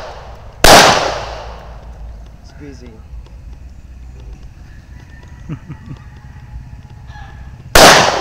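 Two pistol shots from a Glock 22 in .40 S&W, one about a second in and one near the end, each a sharp crack whose echo dies away over about a second.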